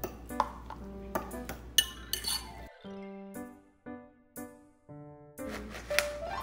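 Metal fork clinking and scraping against a glass mixing bowl while stirring lumpy mashed potato, with sharp clinks mostly in the first three seconds. Light background music with mallet-like notes plays throughout.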